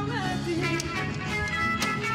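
Live band playing folk dance music, with guitar, drums and a melody line that slides in pitch, and a strong beat about once a second.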